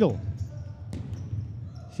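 Futsal ball struck once about a second in, a sharp knock that rings in the sports hall's reverberation over low hall noise.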